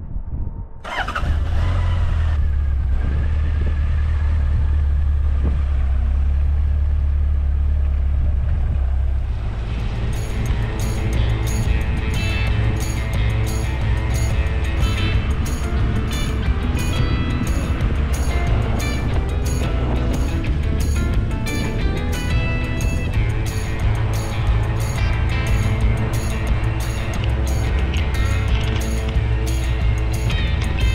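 Honda CB1100's air-cooled inline-four engine starting about a second in and settling into a steady idle. From about ten seconds in, background music with a steady beat takes over.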